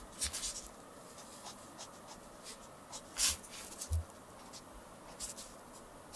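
Fine-tip pen scratching across paper in short, faint strokes as a line sketch is drawn. The loudest stroke comes about three seconds in, and a soft low bump follows just after.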